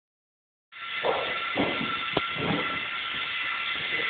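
Small robot's electric drive motors running steadily with a whirring whine as it drives across the floor, starting a little under a second in, with a single sharp click about two seconds in.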